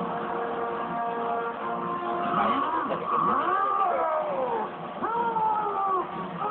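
Anime soundtrack from a TV speaker, recorded off the set: steady held tones, then from about two seconds in several wailing sounds that rise and fall in pitch.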